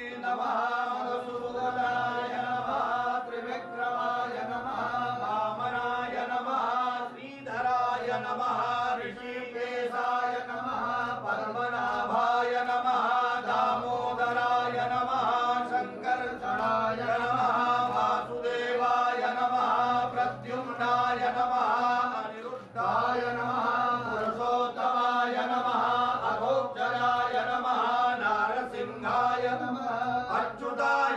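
Hindu priests chanting Sanskrit mantras in a steady, continuous recitation during a temple puja, with only a few brief pauses for breath.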